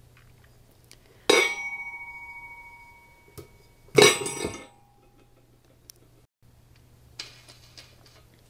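Stainless steel lid of a cylindrical filter housing clanking against the metal canister twice. A strike a little over a second in keeps ringing with a clear metallic tone for about two seconds, and a louder clank about four seconds in rings only briefly.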